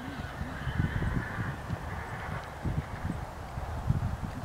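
A horse cantering on grass: dull, uneven thuds of its hooves on the turf, with short low pitched sounds near the start.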